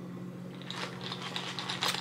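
Light, irregular clicks and rattles of ice in a plastic cup of iced coffee being sipped through a straw, starting about a third of the way in, over a steady low hum.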